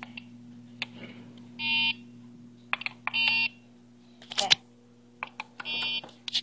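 Schindler Miconic 10 destination keypad beeping as keys are pressed: three short electronic beeps well over a second apart, with clicks of handling and button presses between them, the sharpest about four and a half seconds in. A steady low hum runs underneath.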